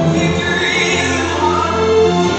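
Choir singing gospel music with grand piano accompaniment, in long held notes.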